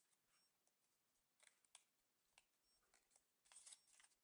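Very faint crinkling and crackling of thin origami paper being handled and folded by hand, in scattered short crackles with a denser burst near the end.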